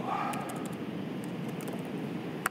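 Faint clicks of typing on a laptop keyboard over a steady room hiss.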